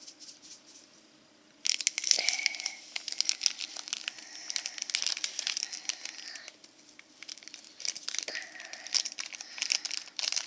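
Crinkling of a small plastic powder packet from a DIY candy kit as it is squeezed and shaken to empty the powder into the tray. It starts about two seconds in, pauses briefly around seven seconds, then goes on.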